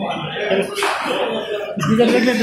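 People talking indistinctly, with a short cough about a second in.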